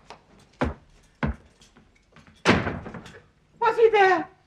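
Three sharp knocks about two-thirds of a second apart, then a louder bang that rings on briefly. Near the end a voice cries out.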